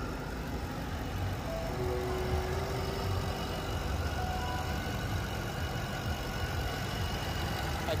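Car-meet ambience: a steady low rumble with faint background chatter and music.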